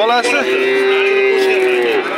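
A bovine (cow or calf) mooing: one long, steady call that begins about half a second in.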